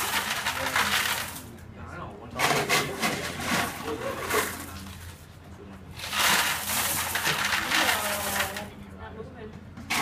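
Indistinct voices talking in short stretches, over a steady low hum.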